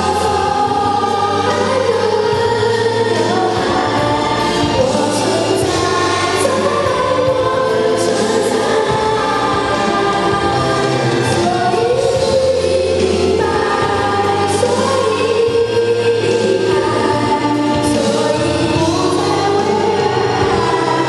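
A girl singing a song into a handheld microphone over a karaoke backing track.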